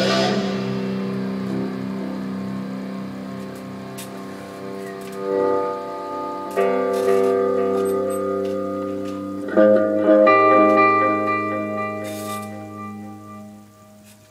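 Amplified Explorer-style electric guitar: chords struck and left to ring out, with new chords about five, six and a half and nine and a half seconds in, each fading slowly. The last one dies away near the end.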